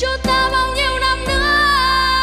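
A boy singing a long held, wavering note into a microphone over instrumental backing with drums.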